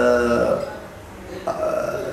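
A man's voice drawn out on one sound whose pitch falls slowly, then a short voiced sound about one and a half seconds in.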